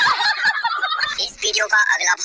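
High-pitched cartoon character voices in a dense, rapidly wavering jumble, followed about a second in by short, clipped speech-like syllables.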